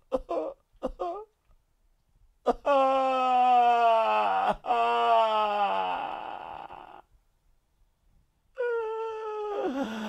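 A man wailing in emotional release: a few short laughing bursts at the start, then a long drawn-out wail falling slowly in pitch, broken once briefly for breath, and a second falling wail near the end.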